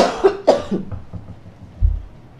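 A woman coughing twice in quick succession, close to the microphone, followed by a low thump near the end.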